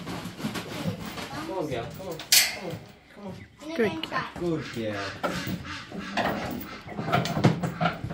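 Indistinct voices talking, too unclear for the words to be made out, with a short sharp noise about two seconds in.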